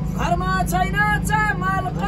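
A man singing a Nepali folk song in a series of held, wavering notes to a bowed sarangi, over the steady low rumble of a bus engine heard from inside the moving bus.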